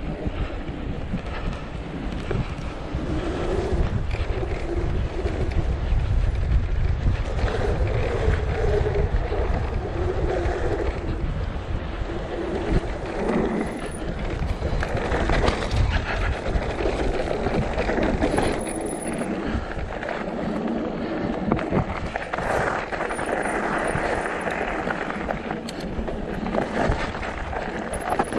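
Mountain bike riding fast down a rough dirt and gravel track: wind buffeting the microphone over tyre noise, with the bike rattling and clattering over stones.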